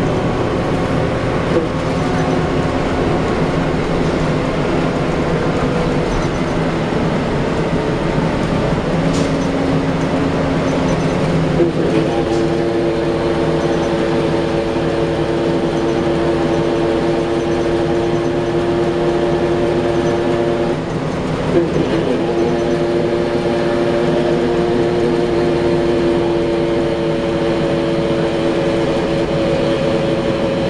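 Inside the cabin of a 2010 Gillig Low Floor bus under way: the Cummins ISL diesel engine and Allison B400R transmission give a steady drone with held tones. The tones strengthen about twelve seconds in, break off briefly a little past twenty seconds, then come back.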